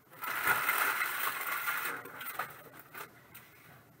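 Hands clearing empty foil trading-card pack wrappers and cards off a table mat: a dense crinkling, scraping rustle for about two seconds, then scattered lighter scrapes and taps.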